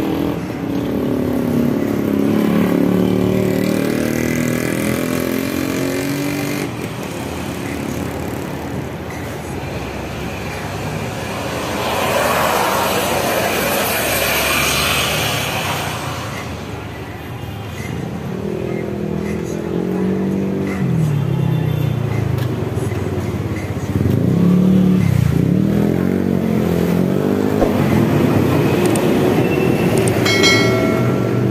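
Street traffic: motor vehicle engines passing and changing pitch as they speed up and slow down, with one louder whooshing pass about twelve to sixteen seconds in.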